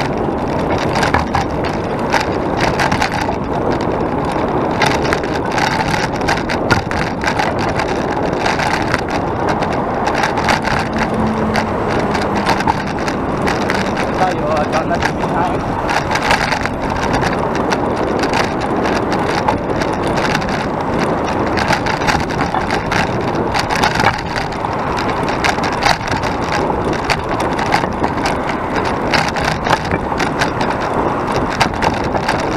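Steady wind noise on the action camera's microphone while riding a bicycle, mixed with passing road traffic, with frequent short knocks and rattles as the bike runs over the path.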